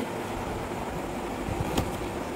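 Steady background noise with one faint click near the end.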